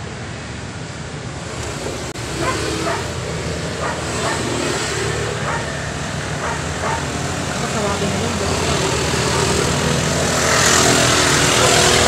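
Steady road traffic noise, swelling near the end as a vehicle passes close by, with faint short sounds scattered through the middle.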